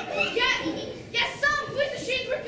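A young actor's voice speaking stage lines, with a sharp click or hiss about a second in.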